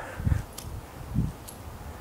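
Sneakers landing on concrete rooftop paving during a boxer's skip step: two soft thuds about a second apart, with faint clicks between.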